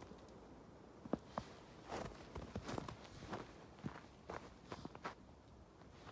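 Footsteps in snow, irregular, a couple of steps a second, starting about a second in and stopping shortly before the end.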